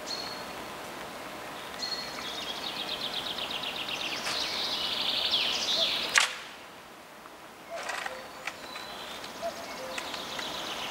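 Small songbirds singing outdoors: a rapid, high trill of repeated notes lasting several seconds, then scattered chirps, over a steady background hiss. A single sharp click about six seconds in.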